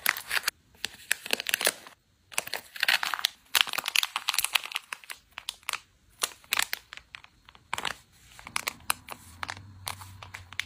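Silver foil zip pouch crinkling as small wooden sticks are slid into it and it is handled, in a run of short crinkles and light clicks. The crinkling is densest from about two to four and a half seconds in, then comes in sparser bursts.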